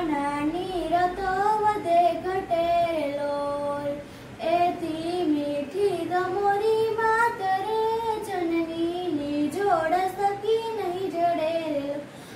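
A child singing a song solo with no accompaniment, in long held notes, with a short pause about four seconds in.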